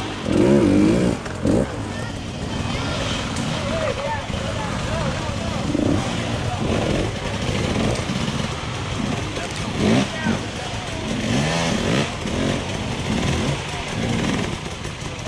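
Dirt bike engines running and revving unevenly as riders pick their way over a rock section, with spectators' voices talking over them.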